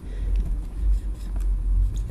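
A low, steady background rumble, with no speech over it.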